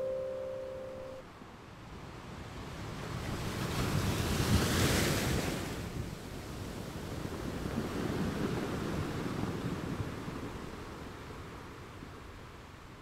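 The last plucked notes of a yazh, a Tamil harp, ringing on and stopping about a second in. Then sea surf washes in, swelling twice and fading.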